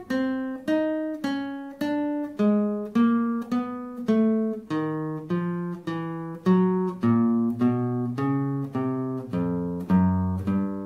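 Nylon-string classical guitar playing the 1234 finger exercise as single picked notes, about two to three a second, each ringing briefly. The four-note finger patterns move string by string toward the bass, so the notes get lower as it goes.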